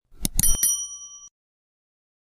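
Subscribe-button sound effect: a few quick clicks followed by a single bright bell ding that rings for under a second.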